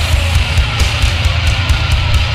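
Heavy metal music: a full band with distorted electric guitars and drums, with frequent sharp cymbal and drum hits over a heavy low end.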